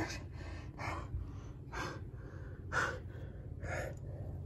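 A person breathing heavily in sharp, gasping breaths, about one a second.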